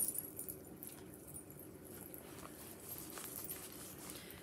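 Quiet handling noise: fabric and a project bag rustling, with a few light clicks and clinks as a stitching project is put away and the next one picked up.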